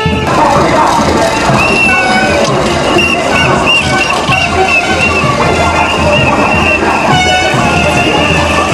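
Upbeat band music with horns and a steady drum beat, high short notes repeating over the rhythm.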